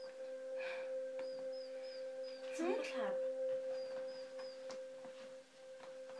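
A steady ringing tone holds at one pitch throughout, with faint short high chirps here and there. About halfway through comes a brief vocal sound whose pitch rises and then falls.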